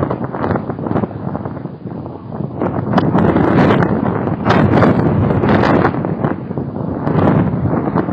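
Wind buffeting an outdoor webcam's microphone in gusts, a rough rumbling noise that swells loudest in the middle.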